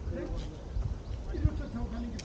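Footsteps on a sandy dirt path, with people talking nearby in words too faint to make out; one heavier step about one and a half seconds in.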